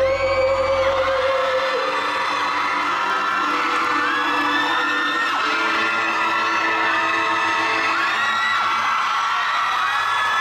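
The last sung note of a pop song, held over the band, ends in the first couple of seconds; then the audience cheers with many high whoops and screams.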